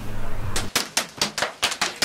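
An airsoft rifle firing a rapid string of sharp shots, about eight to ten a second, starting just under a second in.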